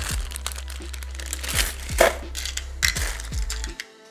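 Small metal screws clicking and rattling against a plastic parts organizer as they are picked through by hand, with a steady bed of quiet background music underneath.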